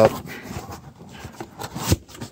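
Cardboard box being handled and closed: flaps rubbing and sliding, with a sharp tap near the end.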